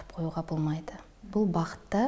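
Only speech: a woman talking in a studio interview, with a brief pause about a second in.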